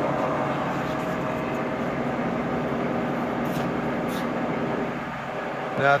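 Tree CNC knee mill running a program: its motors give a steady hum with faint steady tones as the table feeds along the Y axis. The sound eases off slightly near the end.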